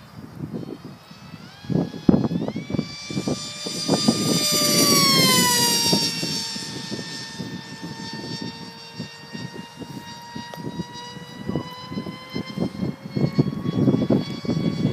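Multiplex Funjet Ultra RC jet's electric motor and pusher propeller whining high overhead. The pitch steps up about two seconds in, swells, then drops and holds steady. Gusts of wind buffet the microphone throughout.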